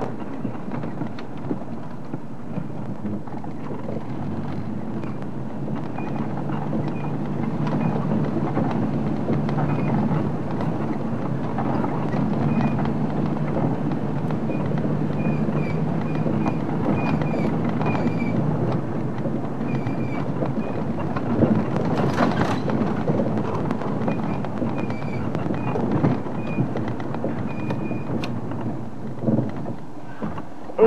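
Open game-drive vehicle driving over a rough dirt track: steady engine and tyre rumble with the body rattling, and a few louder knocks from bumps about two-thirds of the way through.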